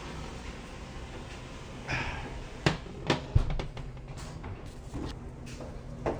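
A glass baking dish being slid off a metal oven rack and set down on the stovetop: a brief scrape, then a few sharp clanks and a dull thump close together about three seconds in.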